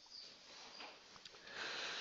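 Faint scratching of a felt-tip marker on a whiteboard, then a louder steady hiss from about one and a half seconds in.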